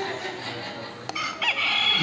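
A contestant's buzz-in noisemaker going off: a harsh, high-pitched squawk that starts about a second in and lasts about a second.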